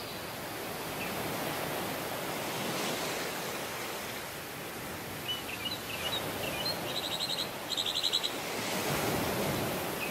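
Surf on a sandy beach, a steady rush of breaking waves that swells and eases. A bird gives scattered high chirps from about halfway through, then two quick, fast trills near the end.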